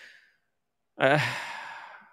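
A man's drawn-out, breathy sighed "uhh", starting about a second in after a short silence and fading away. A brief breath trails off just before the silence.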